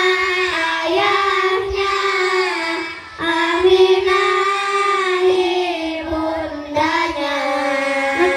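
A group of children singing together in unison, holding long drawn-out notes, with short breaks about three seconds in and again a little after six seconds.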